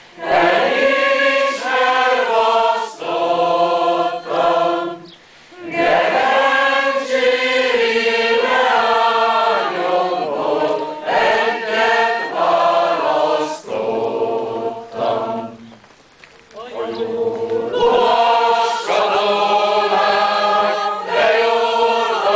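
Massed choirs singing together a cappella in sustained phrases, with short breaks between phrases about five seconds in and again around fourteen to sixteen seconds in.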